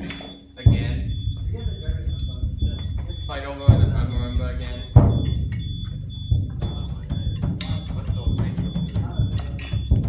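Percussion ensemble playing: deep drum hits, the sharpest about a second, four seconds and five seconds in, over a continuous low rumble.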